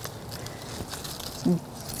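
Quiet outdoor background, with a short voice sound about one and a half seconds in.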